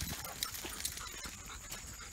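Faint, irregular crunching and ticking of footsteps and dog paws on a gravel path, with a thin steady insect drone behind.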